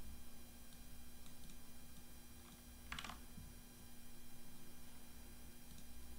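A few scattered computer keyboard clicks, one louder about halfway through, over a faint steady electrical hum.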